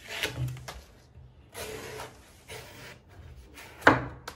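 Kitchen knife slicing through the fibrous husk of a palm fruit on a wooden cutting board: several short rasping cuts, then a sharp knock just before the end as the blade cuts through onto the board.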